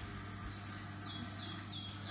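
A bird singing: a run of short, high whistled notes, each falling in pitch, about three a second, over a steady low hum.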